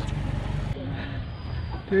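Steady low rumble of road traffic with faint voices in the background. It drops away suddenly about three-quarters of a second in, leaving a quieter background.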